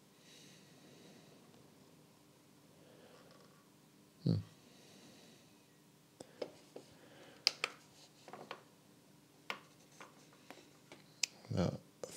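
Handling of a borescope inspection camera: faint scattered clicks and taps as the probe is moved and the handheld screen unit is worked, thickest in the second half, with one soft thump about four seconds in.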